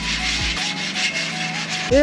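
Steady rough rubbing on the metal bars of an outdoor pull-up frame, as the bars are wiped and scrubbed clean before painting, with faint music underneath.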